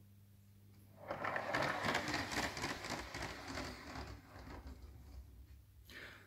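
A Lego train carriage on plain standard Lego axles, without roller bearings, rolling down a ramp and along plastic Lego track with a clicking rattle. The rattle starts about a second in and fades as the carriage rolls away.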